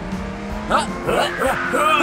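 Cartoon race-car sound effects over background music, with quick rising and falling whines in the second half.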